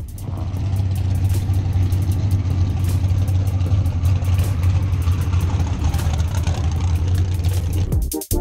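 A vehicle engine idling steadily, a low, even hum with a little clatter over it.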